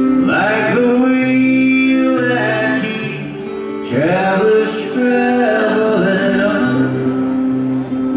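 A man singing a folk song over an acoustic guitar in live performance, in two sung phrases with a short break about three seconds in.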